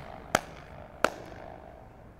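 Two sharp hand claps, about a third of a second and a second in, clattering and bouncing between the high parallel walls of a narrow street: a flutter echo.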